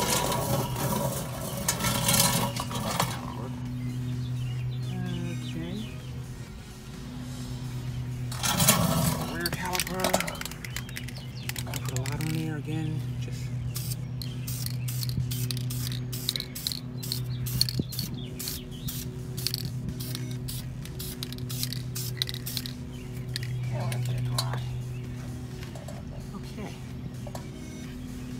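Aerosol can of Dupli-Color caliper enamel spraying in many short hissing bursts through the second half, laying the first light coat on a brake caliper.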